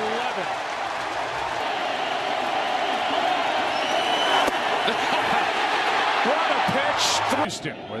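Large ballpark crowd cheering, a dense steady roar of many voices, with one sharp pop about four and a half seconds in. The sound drops away suddenly near the end.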